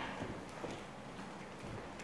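Soft footsteps of a person in sandals walking across a hardwood floor: a few light knocks, the strongest at the very start.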